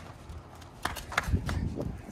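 Quick running footsteps on a paver patio, with two sharp slaps about a second in, and a low rumble from wind or the phone being swung in the second half.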